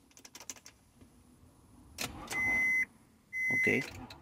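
Light clicks as the key in the 2002 Acura MDX's ignition cylinder is touched, then two steady high-pitched tones from the car of about half a second each, a second apart. This happens as the worn ignition switch loses contact at a touch: the owner calls it classic of a faulty ignition switch.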